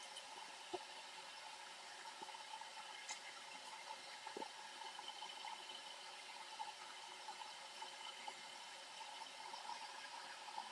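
Faint steady hiss of room tone, with a couple of faint short clicks.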